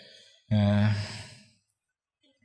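A man's voice holding one drawn-out vowel sound, steady in pitch, for about a second, a sigh-like hesitation sound between spoken phrases.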